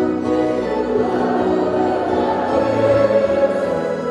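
A congregation and choir singing a hymn in Indonesian in many voices, with the church organ holding steady, sustained chords underneath.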